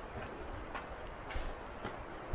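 Footsteps on a dry dirt trail at an easy walking pace, a crunchy step a little under two per second, over a low rumble of wind on the microphone.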